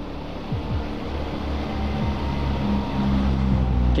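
Motorcycle engine running while the bike rides along, mixed with low wind rumble on the microphone, getting louder toward the end.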